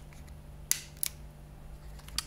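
Two sharp plastic clicks about a second apart from a third of a second, as a Philips 5000 Series electric shaver is handled in the hand, over a steady low hum.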